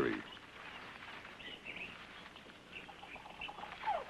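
Faint jungle ambience: scattered short bird chirps, with a single falling whistled call near the end.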